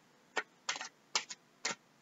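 A deck of oracle cards being shuffled in the hands: about five short, sharp clicks as the cards knock and snap together.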